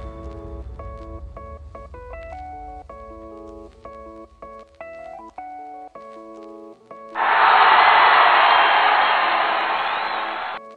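Background music made of a simple melody of held notes. About seven seconds in, a loud, steady rushing noise cuts in suddenly over it and drowns it out.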